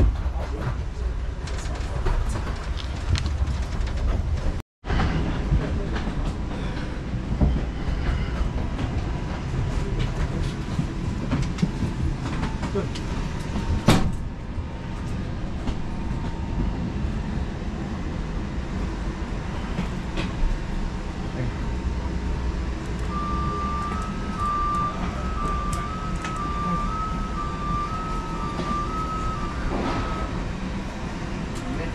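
Steady low rumble inside an airport jet bridge during boarding, with murmured passenger voices. Late on, an electronic beeping that alternates between two pitches sounds for several seconds.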